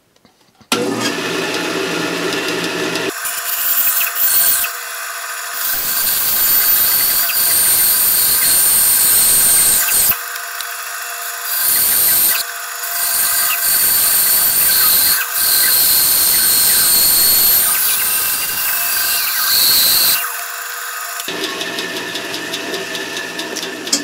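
A band saw switches on about a second in and runs up to speed. Its 1/4-inch, 6 TPI blade then cuts through a thick pine 2x4 block, with several short lulls as the cut is steered around curves. The cutting stops near the end while the saw keeps running.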